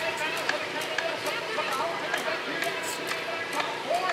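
Background voices of people talking at a distance outdoors, with no close speaker and a few faint clicks.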